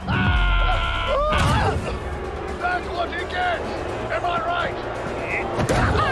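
Soundtrack of an animated fight scene: music and short bits of character voices, with a deep boom under held notes at the start and two sharp hits, about a second and a half in and near the end.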